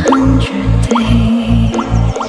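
Electronic dance music from a nonstop electro house mix: a pounding bass beat several times a second under a held synth note, with short rising blips scattered through it.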